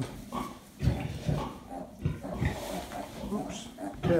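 A farrowing Gloucester Old Spot sow giving a series of short, low grunts at irregular intervals.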